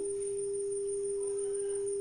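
Small multimedia speaker playing a steady 400 Hz sine tone from a smartphone signal-generator app, one unchanging pitch with no overtones.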